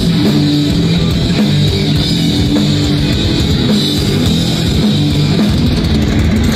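Rock band playing live: electric guitars over bass and drum kit in a loud, steady instrumental passage without vocals.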